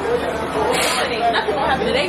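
Indistinct voices talking over a steady background of city street noise.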